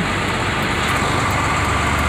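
Steady low rumble of a vehicle engine running, with a faint steady whine above it.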